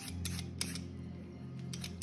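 Y-shaped vegetable peeler scraping the skin off a carrot in a few quick short strokes, most of them in the first second, over a steady low hum.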